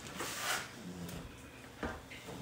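A metal ladle serving mushroom gravy onto a plate, with a soft wet scraping about half a second in and one sharp knock near the end as the ladle is put back into the wok.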